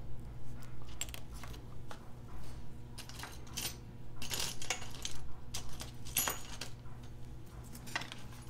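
Light metallic clicks and clinks of small watch parts and tools being handled on a bench, scattered irregularly, with a few brief rustles.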